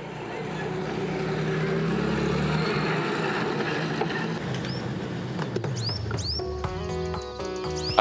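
Street ambience of traffic and crowd noise, with a few short bird chirps midway, and a brief run of steady music notes near the end.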